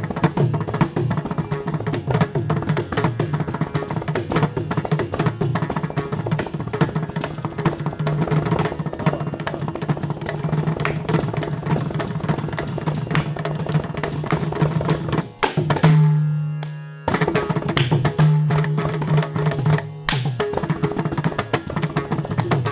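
Carnatic percussion: a mridangam playing dense, rapid strokes over a steady low drone. About sixteen seconds in there is a brief break where a single low ringing note holds, then the strokes resume.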